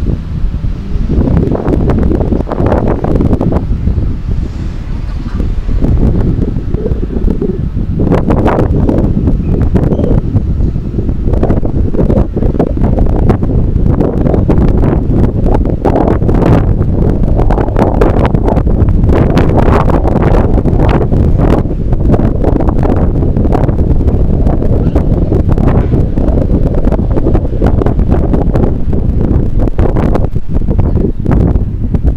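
Wind buffeting the microphone of a camera on a moving bicycle: a loud, gusty rumble, heaviest in the low end.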